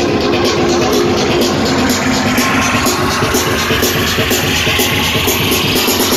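Loud electronic dance music from a DJ set over a club sound system, with a steady beat. A hiss swells through the middle and cuts off near the end.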